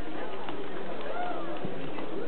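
Crowd babble: many people talking at once in a steady wash of overlapping voices, with footsteps on wooden stairs.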